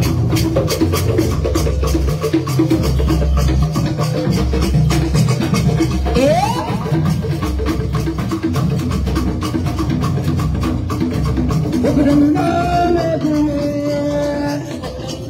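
Traditional drum music: a wooden slit drum struck with sticks, together with deeper drums, in a fast, steady rhythm. A short rising glide sounds about six seconds in, and a held melodic line comes in near the end.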